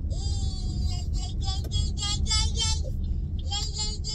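High-pitched singing, one held note and then short syllables repeated about six a second, over the steady low hum of a car cabin on the road.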